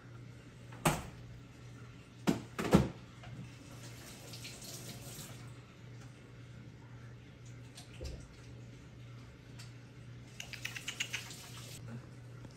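Household knocks in a kitchen: three sharp knocks in the first three seconds, a soft hiss, then a quick run of clicks near the end, over a steady low hum.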